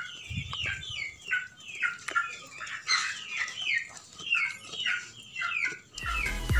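Birds calling repeatedly: a steady string of short falling chirps, about two or three a second.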